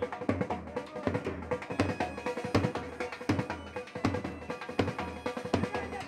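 Band music led by fast, loud drumming, with a steady held note underneath.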